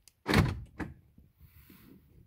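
Mercedes door-lock actuator unlocking with a sudden thunk about a third of a second in, followed by a smaller click, as the bare lock rod pops up in its sill hole.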